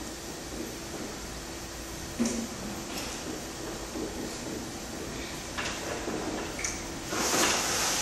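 Marker pen writing on a whiteboard: a run of short strokes, with a longer, louder stroke near the end.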